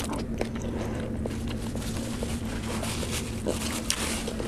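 Close-up wet chewing of a mouthful of puri and curry: small moist mouth clicks and smacks, over a steady low hum.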